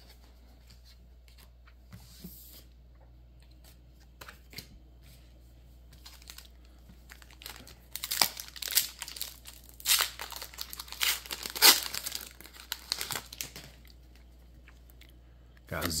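Foil wrapper of a Pokémon Scarlet & Violet 151 booster pack being torn open and crinkled: a run of loud tearing and crackling from about eight seconds in, ending after about five seconds. Before it, a few light clicks and rustles of cards being handled.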